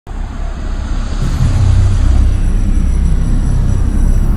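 Deep, loud cinematic rumble, a logo-intro sound effect. It starts abruptly and swells louder about a second and a half in.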